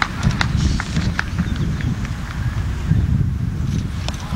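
Handling noise on a camcorder microphone as the camera is carried along: a heavy, uneven low rumble from the operator's steps, with scattered sharp clicks, most of them in the first two seconds.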